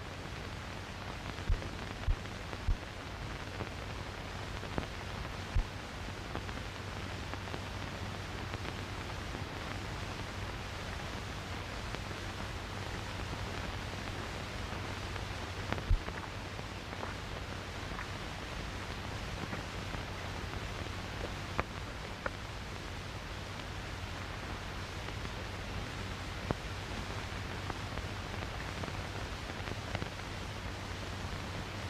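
Steady hiss and low hum of an old 1930s film soundtrack, with occasional faint crackles and pops scattered through it.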